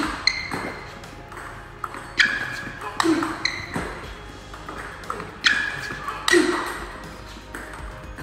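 Table tennis ball being struck back and forth in a fast training exchange: quick sharp clicks of the ball off bats and table. Under them runs background music that repeats a short phrase about every three seconds.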